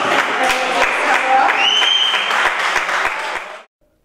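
Audience applauding in a room, with one high whistle over it about halfway through that rises and then holds. The applause cuts off abruptly shortly before the end.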